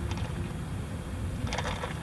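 Steady low rumble of background noise inside a car's cabin.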